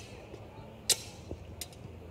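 Sparring longswords clashing blade on blade: a sharp, ringing strike about a second in, and a weaker one just over half a second later.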